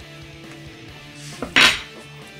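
Metal spoons clinking and scraping on a table as they are set down, with one short loud scrape about one and a half seconds in, over quiet background music.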